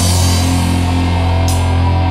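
Heavy, fuzz-distorted stoner doom metal played by a guitar, bass and drums trio: a held low chord rings out, with a cymbal crash at the start and another about one and a half seconds in.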